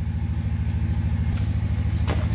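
An engine running steadily at idle, a low hum with a fast, even pulse.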